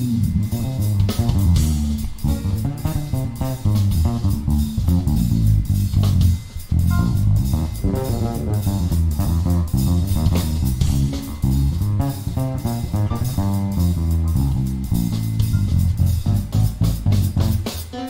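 Electric bass guitar solo, a busy run of short low notes, over light drum kit accompaniment in a live jazz fusion performance.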